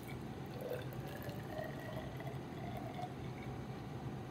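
Hot water poured in a thin stream from a foam cup into a glass graduated cylinder. The pitch rises slightly as the cylinder fills.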